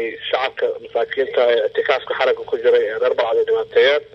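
Speech only: one voice talking without a break.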